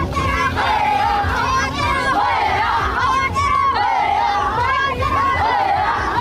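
Crowd of Papuan highland marchers chanting together, many voices in a wavering call that rises and falls over and over, with crowd noise around them.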